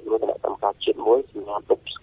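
Speech only: a news presenter talking steadily in Khmer, with the thin, narrow sound of a radio broadcast.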